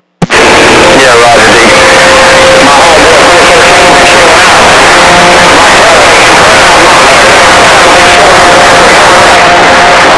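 CB radio receiver turned up loud on a crowded skip channel: a wall of static with faint overlapping voices and steady whistling tones, many stations keying on top of one another. It cuts in just after the start.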